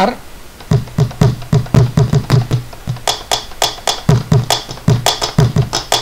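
Gaita zuliana tambora samples played in a rhythm from drum-rack pads: deep hits on the drum head, with sharper strikes on the drum's wood joining about halfway, some three to four hits a second.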